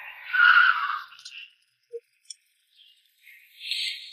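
Two short, noisy whooshes with no engine rumble under them: a louder one in the first second and a half and a weaker one near the end, with a couple of faint clicks between.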